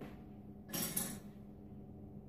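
A brief clatter of kitchen utensils or dishes about a second in, lasting about half a second with a sharp clink at its end, over a faint steady low hum.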